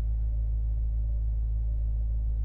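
A deep, steady low rumbling drone, held without change, the kind of sustained low tone used as a horror film's background score.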